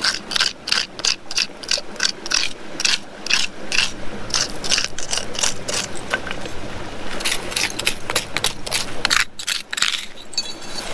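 Gravel and small stones being scraped off shallow rock bedrock with a hand tool, in quick repeated scraping strokes, about three a second, with a brief pause near the end.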